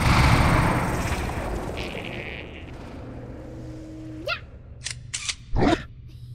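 Cartoon sound effects for a giant cat-like monster. A loud noisy blast at the start fades over about two seconds. Then a held tone glides sharply upward about four seconds in, followed by a few short hisses and a final short burst near the end.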